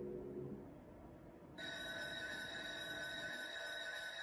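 Slot machine electronic sound effects: a few low melody tones fade out, then about a second and a half in, a sustained, bright electronic ringing chord starts suddenly and holds. It comes as a reel set lands a win of action games.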